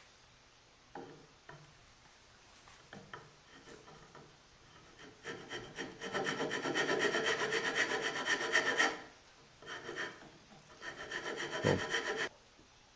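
A file rasping on a wooden air-rifle stock as the stock is filed down to fit. A few light knocks come first, then a steady run of quick rasping strokes for about four seconds, a short pause, and a shorter run near the end.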